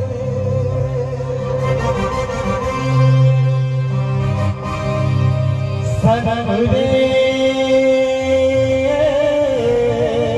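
Live Sambalpuri stage band music through loudspeakers: a long, wavering melody line over a steady bass line, with a shift in the tune about six seconds in.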